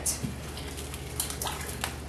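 A utensil stirring stew in an enamelled pot and scraping the browned bits off the bottom: a few faint clicks and scrapes over a steady low hum.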